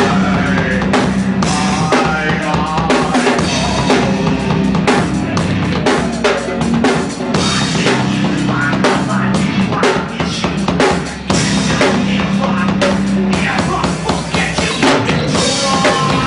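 Rock band playing loud, dense music with the drum kit to the fore: kick and snare hits over a steady bass line.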